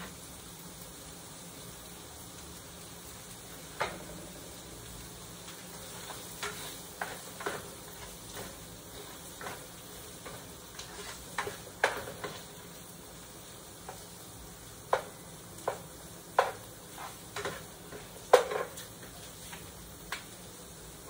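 Spatula clinking and scraping in a frying pan at irregular intervals as onion and garlic are stirred, over a faint steady sizzle of frying.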